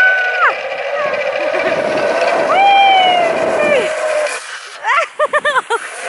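A woman squealing in delight on a playground ride: a high held squeal at the start and a shorter one near three seconds, over a rushing noise of the ride in motion, then a quick burst of laughter about five seconds in.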